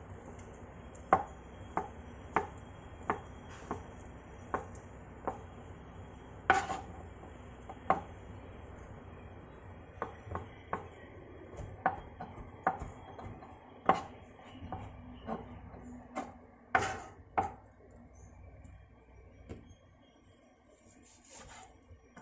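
Kitchen knife chopping soft, pressure-cooked beef offal on a plastic cutting board: irregular sharp knocks of the blade striking the board, about one to two a second, which stop about three-quarters of the way through.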